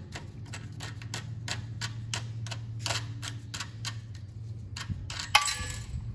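Ratchet wrench clicking steadily, about four clicks a second, as bolts are backed off a small engine. A louder clatter near the end, as a small part is dropped.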